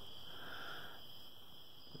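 Quiet pause with a faint steady hiss and a soft breath drawn in near the start.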